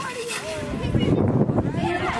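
People's voices talking outdoors, with a loud low rumble filling the second half.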